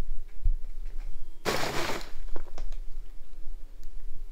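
Black plastic trash bag being shifted by hand: one loud crinkling rustle of the plastic lasting about half a second, about a second and a half in, with a few lighter rustles and knocks around it.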